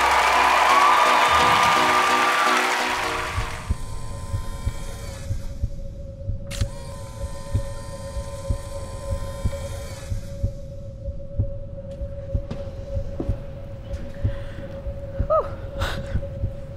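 A song's final chord fades out over the first three seconds or so. Then a heartbeat sound effect at about 116 beats a minute, low beats roughly twice a second, plays over a steady droning tone.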